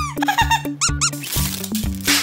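Upbeat background music with a steady beat, overlaid with squeaky sound effects: a quick run of squeaks just under a second in, then a short hiss about halfway through.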